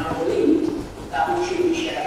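A man's voice talking over a lecture-hall microphone, with a short pause about a second in.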